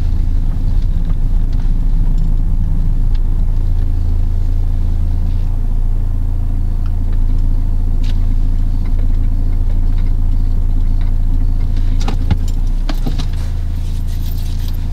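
Steady low hum of a car's engine and running gear heard from inside the cabin, with a few faint clicks near the end.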